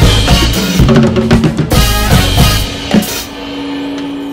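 Tama Imperialstar drum kit with Meinl bronze cymbals, played over a zouk backing track, with busy bass drum, snare and cymbal strokes. The band and drums stop together on a final hit about three seconds in, leaving one low held note ringing.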